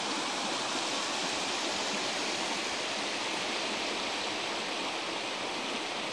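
The Chattooga River's water rushing steadily over shallow rocky riffles, an even, unbroken hiss.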